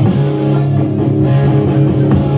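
Live rock band playing an instrumental passage with no singing: electric guitar and bass guitar over drums.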